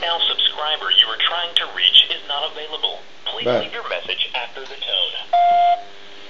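A voicemail greeting playing over a phone line through a handset speaker held near the microphone, with a thin, narrow-sounding recorded voice. About five seconds in it ends with the answering system's beep, one steady tone lasting about half a second and louder than the voice.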